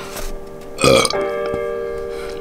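A single short, loud burp about a second in, over sustained bell-like music tones.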